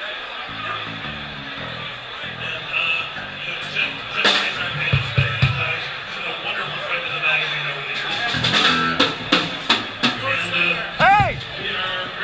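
A live band playing: bass and electric guitar with drum kit and conga hits, with sharp strikes about four seconds in and a cluster around eight to ten seconds. Voices sound over the music, and one gives a short rising-and-falling whoop near the end.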